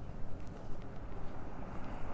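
Uneven low rumble of wind on a clip-on microphone, mixed with outdoor street noise and a few faint ticks.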